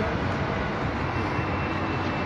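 Steady, even rushing background noise with no clear single source.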